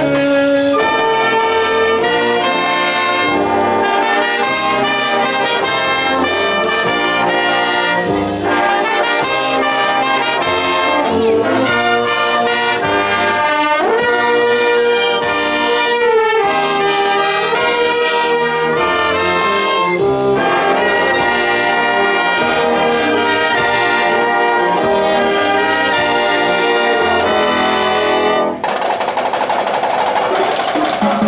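A school wind band playing a lively medley: trumpets, trombones, saxophones, flutes and sousaphone together in full sound. Near the end the music dips briefly and comes back with a brighter, noisier passage.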